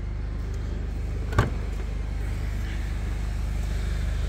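Mercedes-Benz C220 BlueTec's 2.1-litre CDI diesel idling with a steady low hum, and a single sharp click about a second and a half in as the boot lid latch releases.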